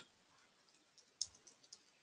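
A few faint computer keyboard keystrokes, starting about a second in: a short burst of typing.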